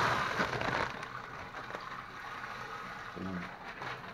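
Rice grains pouring out of a plastic bag into a plastic drum, a steady hiss that stops about a second in. After it, faint crinkling of the emptied plastic bag.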